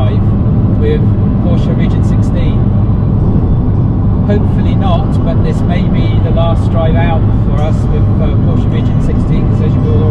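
Steady road and engine rumble inside a car cabin at dual-carriageway speed, with a man talking over it.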